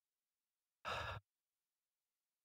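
A man's single short breath, about a third of a second long, between spoken phrases; the rest is silent.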